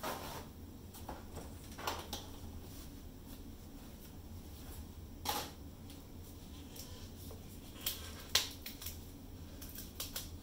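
Scattered light clicks and knocks of small plastic paint cups being handled and set down, five or so in all, the loudest near the end, over a low steady hum.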